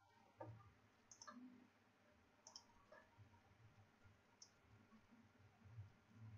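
Near silence: room tone with about half a dozen faint, scattered clicks of computer keys and mouse buttons.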